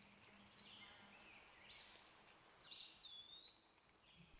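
Near silence with faint, high-pitched bird calls: a few short gliding notes, then a longer whistle near the end that drops slightly and holds steady.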